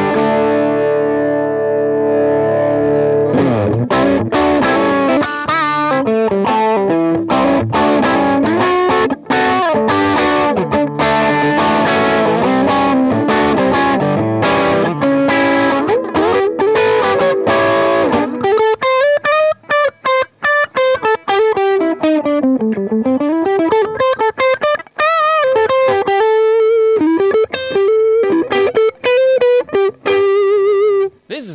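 Electric guitar played through a TC Electronic MojoMojo overdrive pedal with moderate gain: a chord rings out, then about 3 seconds in comes fast picked chord-and-riff playing. From about 18 seconds in it turns to a single-note lead with string bends and vibrato, ending on a held note.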